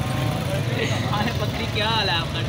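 A vehicle engine running steadily, a low, even hum, with people's voices over it.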